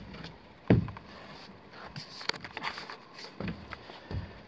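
Handling and movement noise from someone moving about in an attic: one louder short thump about three-quarters of a second in, then scattered light clicks, knocks and rustling.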